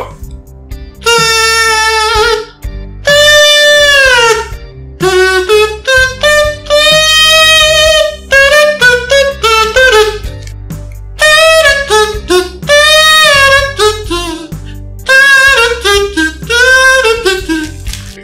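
Comb-and-plastic-bag kazoo (comb saxophone) played by humming in a high falsetto against the stretched plastic, giving a buzzy, saxophone-like tune. It plays a string of separate notes starting about a second in, some held for a second or more and others sliding up or down in pitch.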